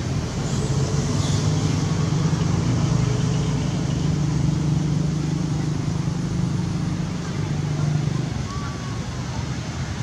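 A motor vehicle engine running steadily nearby, a low hum that swells after the first second and fades near the end.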